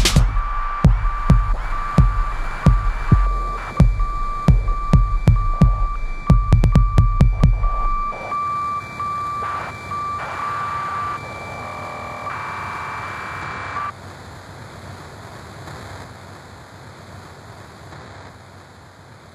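Outro of an electro track: a thumping kick drum under a pulsing, beeping high synth tone. The drums drop out about eight seconds in and the beeping synth carries on alone with glitchy flutters. It stops near fourteen seconds, leaving a soft wash of noise that slowly fades.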